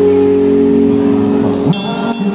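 Live band music: a sustained chord holds steady, then near the end a bright struck note rings out and the drummer's hits on the toms come in.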